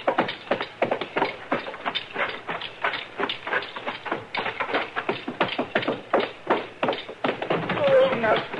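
Radio-drama sound effects: a rapid, fairly even run of knocks and thuds, about five a second, with voices underneath.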